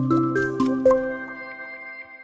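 Closing music sting: a short run of about four ringing notes in the first second, which hold on and fade away.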